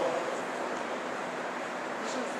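Steady background hiss of room noise with no speech.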